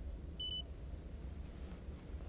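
A single short, high beep from the 2022 Mazda 2's infotainment touchscreen, acknowledging a finger tap, about half a second in, over a faint low hum.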